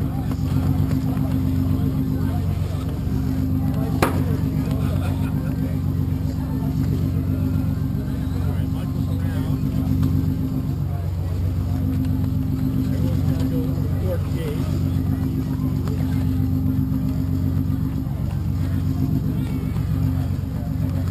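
Steady low hum of a running engine, holding several fixed tones, with a single sharp click about four seconds in.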